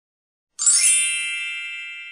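A single bright chime sound effect comes in suddenly about half a second in, with a brief sparkling shimmer on top, then rings on as a high bell-like tone that slowly fades.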